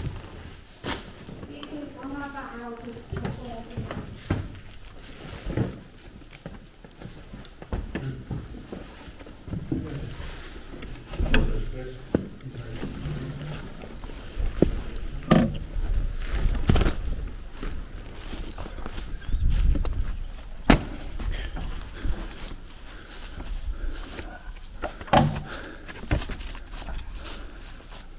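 Knocks, thumps and scuffs of people climbing out through a window frame and stepping down outside, with footsteps and a few low voices.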